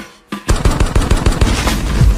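Machine-gun fire sound effect in a hip-hop radio DJ drop. A single shot comes right at the start, then after a short gap a rapid burst of automatic fire.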